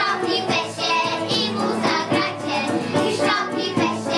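A group of children singing together over steady instrumental backing music.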